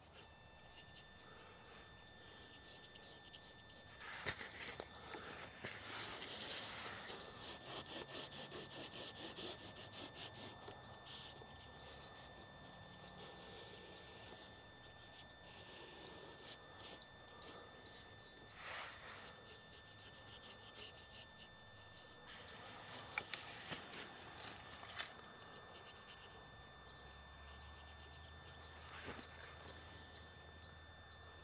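Faint scratchy scrubbing of a bristle paintbrush, wet with mineral spirits, on a canvas panel. A fast run of strokes comes from about four to eleven seconds in, then quieter rubbing and wiping with a few sharp clicks.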